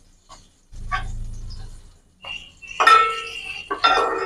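A metal ladle knocking and scraping against a wide aluminium frying pan, ringing after each strike, twice in the second half, the first the loudest. A brief low hum comes about a second in.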